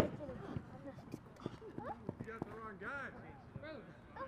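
Several people's voices calling and shouting across a sports field, none close enough to make out, with one sharp knock right at the start.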